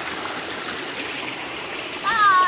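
Shallow rocky stream running over and between boulders, a steady rush of flowing water.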